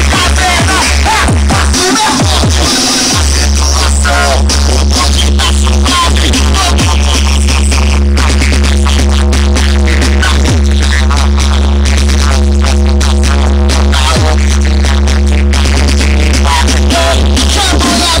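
Loud electronic music played through a car trunk sound system of four 15-inch Eros Hammer 5.2k woofers and four horn tweeters, with a heavy, continuous bass line. The bass drops out briefly about two to three seconds in, then comes back.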